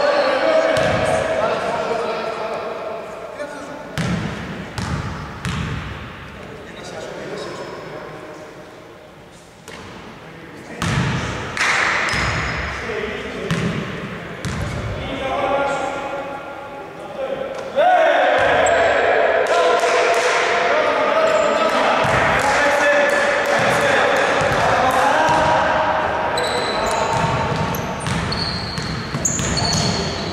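Basketball bouncing on a wooden court, with players' voices calling out and echoing in a large sports hall. The voices get louder and more continuous about two-thirds of the way through.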